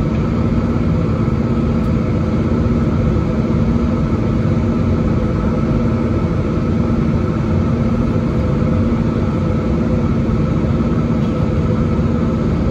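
Steady cabin noise of an Airbus A320-216 in flight, heard at a window seat over the wing: the constant drone of its CFM56-5B turbofan engines and rushing air, with a steady low hum.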